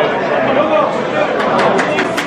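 Football crowd chatter in a stadium stand: many supporters talking at once, with a few sharp claps or knocks in the second half.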